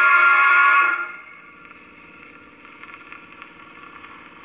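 Record playing on an HMV Zealand gramophone: the music is loud, then drops away about a second in, leaving a much quieter sound of fading notes and needle noise with a few faint ticks.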